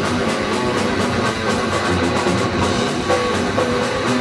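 Heavy metal band playing live: distorted electric guitars and electric bass over a drum kit, with fast, even drum strokes under held guitar chords.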